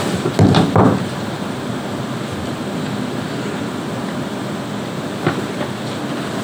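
Steady hiss of meeting-room ventilation picked up by the table microphones, with a few trailing words of speech in the first second and a small click about five seconds in.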